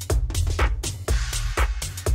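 Minimal techno DJ mix: a steady four-on-the-floor kick drum about twice a second with offbeat hi-hats over it.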